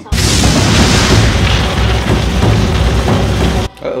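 Cartoon explosion sound effect of a homemade lamp-oil bomb: a sudden loud blast that carries on as a deep rumble, then cuts off abruptly near the end.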